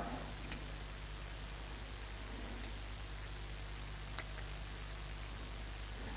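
Low steady hum of room tone, with a faint tick about half a second in and a single sharp click about four seconds in as the spray gun and its snap-on digital gauge are handled.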